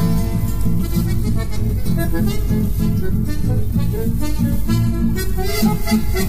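Instrumental chamamé: accordion and bandoneón playing the melody together over guitars keeping a steady lilting beat.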